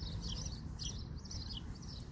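Small birds chirping: a quick run of short, high chirps over a faint low background rumble.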